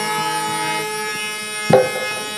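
Live Chhattisgarhi folk music accompaniment between sung lines: a steady held chord that fades a little, with a single drum stroke near the end.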